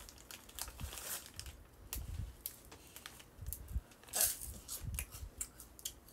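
A plastic snack bag being torn open and handled, crinkling with many scattered sharp crackles.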